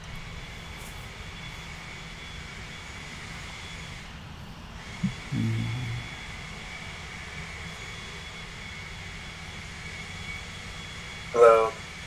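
Steady background hiss with a faint, even high tone and no speech. About five seconds in there is one brief low sound.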